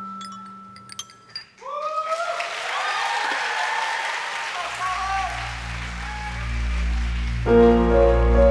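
The last note of a violin piece dies away, then about a second and a half in the audience breaks into applause with cheering and whoops. Under the applause a low sustained bass note comes in, and near the end the next song's instrumental intro begins.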